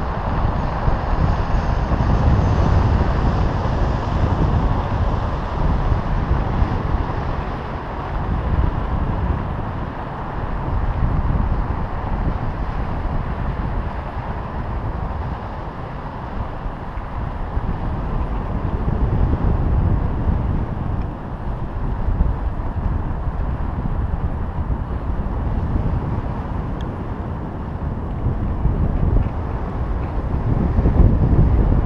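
Wind rushing over a GoPro camera's microphone as a high-altitude balloon payload climbs: a steady, low rumbling noise that swells and eases every few seconds.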